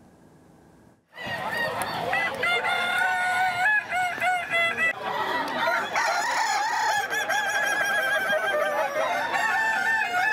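Several Kukuak Balenggek roosters crowing over one another, their long crows broken into stepped notes that climb and drop in tiers. The crowing starts about a second in.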